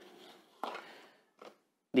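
A glass ink bottle being slid out of its cardboard box: a short scraping rustle about half a second in, then a second brief one.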